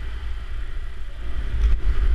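Motorcycle engine rumbling as the bike moves off at low speed, getting louder as it picks up, with a brief dip near the end.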